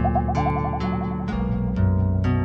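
Brazilian funk instrumental beat: deep bass notes and regular percussion hits under a quick run of short, rising high notes that stops about two-thirds of the way in.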